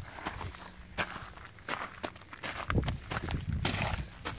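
Footsteps on gravel: a person walking, the stones crunching underfoot in irregular steps.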